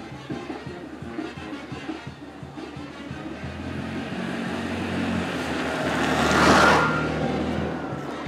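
Small motorcycle engine approaching and passing close by, getting louder to a peak about six and a half seconds in and then fading.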